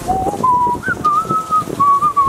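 A person whistling a short tune: a few held notes stepping up and then settling back down.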